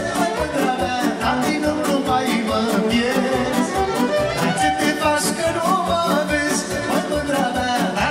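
Live Romanian hora party music: a male singer over a band playing a fast, steady dance beat.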